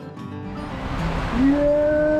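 Acoustic guitar music stops about half a second in. It gives way to the noise of water and a raft rushing down an enclosed hydroslide tube. About a second later a rider lets out one long, loud whoop that rises slightly in pitch and holds.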